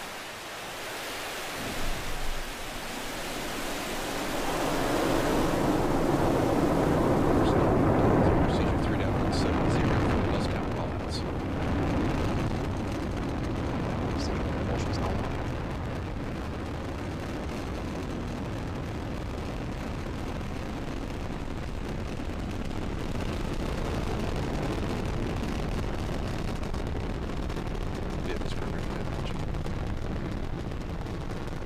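Falcon 9 rocket's nine Merlin 1D engines at liftoff: a roar that builds over the first few seconds and is loudest for several seconds, then settles to a steady deep rumble as the rocket climbs away, with a few sharp crackles in the middle.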